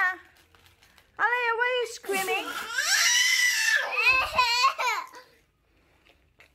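A baby squealing and screaming in short high-pitched calls, with one long shrill scream about two seconds in.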